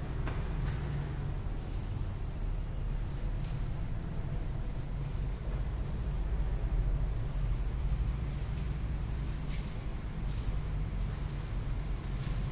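Steady, high-pitched chirring of insects in the background, with a low steady hum underneath.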